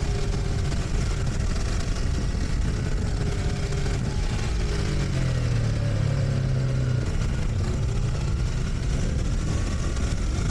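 Motorcycle riding at road speed: heavy wind rushing over the microphone, with the engine running steadily underneath. About halfway through, the engine note bends and grows stronger for a couple of seconds, then settles again.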